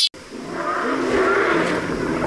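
A monster's roar, a sound effect: it rises over the first half second, then holds, rough and wavering in pitch.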